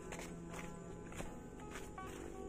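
Footsteps on dry leaf litter, about two steps a second, under steady background music.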